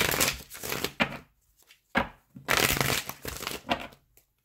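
A deck of tarot cards being shuffled by hand in three papery bursts: about a second at the start, a short one near the middle, and a longer run in the second half.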